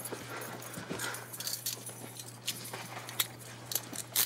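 Handcuffs and keys being handled: a few small metallic clicks and rattles over a low steady hum.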